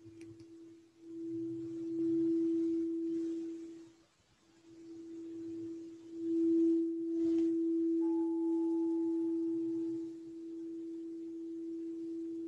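White crystal singing bowl rimmed with a mallet, giving one steady pure tone that swells up, fades away about four seconds in, then is drawn up again and held, with a fainter higher ring joining for a couple of seconds. It sounds to close the final relaxation of a yoga class.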